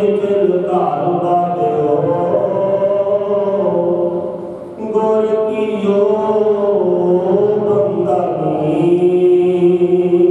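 A man chanting Sikh scripture (gurbani) into a microphone in a long-drawn, melodic voice. He sings two phrases of held notes with a short break about halfway through.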